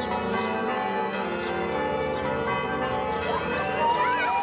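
Church bells ringing in a steady peal. A high wavering cry rises over them near the end.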